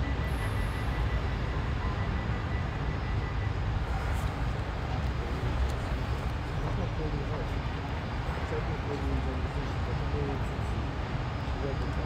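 London Underground tube train running, a steady low rumble heard from inside the carriage, with a faint high tone over the first few seconds.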